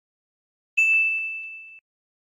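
A single bright bell ding from a subscribe-button notification sound effect, starting sharply about three quarters of a second in and ringing down over about a second before it cuts off, with a couple of faint clicks during the ring.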